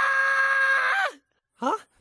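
Cartoon Smurf's voice holding one long, steady-pitched yell that drops off about a second in, followed after a short gap by a brief rising yelp.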